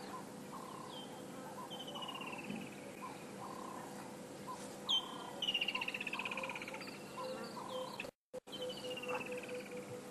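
Birds calling in the bush: several descending, rapidly pulsed trills and many short repeated chirps, over a faint steady hum. The sound cuts out briefly a little after eight seconds in.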